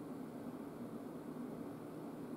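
Steady room tone: a low, even hum with a faint hiss and no distinct sounds.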